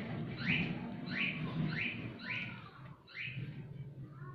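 Five short, high-pitched rising calls from an animal, about one every two-thirds of a second, the last a little later than the rest.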